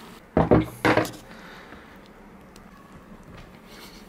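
Two short metallic knocks about half a second apart, a small metal pot clinking as the pouring of melted candle wax into a tin-can cardboard-and-wax stove finishes. After them there is only faint room noise.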